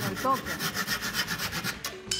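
Fine-toothed handsaw cutting through a small wooden piece in quick back-and-forth strokes, finishing the cut and stopping a little before the end.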